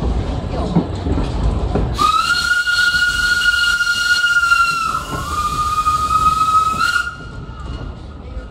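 Steam locomotive whistle blowing one long blast of about five seconds, starting about two seconds in. Its pitch dips briefly midway and it cuts off sharply. Under it is the rumble of the train running along the track.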